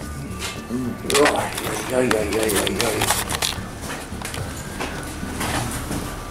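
Indistinct, fairly quiet speech with music in the background.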